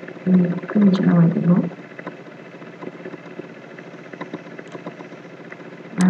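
A voice speaking briefly for the first second or two, then steady low background noise with a few faint clicks.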